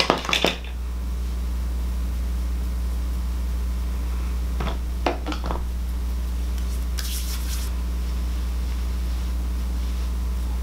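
Steady low electrical hum, with a few brief clicks at the start, a couple of short scrapes about five seconds in and a short hiss about seven seconds in: handling noise from hands working edge control into the hairline.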